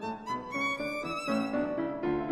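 Violin and Steinway grand piano playing a classical sonata Allegro, the violin bowing a quick-moving melody over the piano, its notes changing several times a second.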